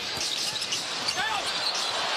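Arena crowd noise during live basketball play, with a basketball bouncing on the court and a few short sneaker squeaks a little over a second in.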